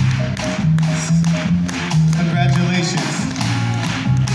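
Live jazz band playing, carried by an upright double bass playing a line of held low notes that change pitch about every half second, with light drum taps and people's voices over it.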